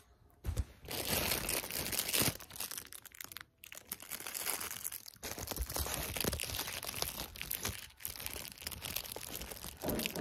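Close rustling and crinkling handling noise that comes and goes, with short pauses about three and a half and eight seconds in.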